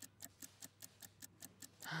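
Faint, fast ticking of a 60-second countdown clock sound effect, about five even ticks a second.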